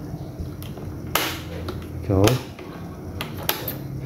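Sharp clicks from an electric scooter's handlebar switches, plus one short sound falling in pitch about two seconds in.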